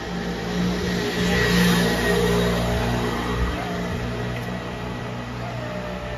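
A motor vehicle's engine running as it passes close by in a narrow street. It grows louder to a peak about a second and a half in, then slowly fades.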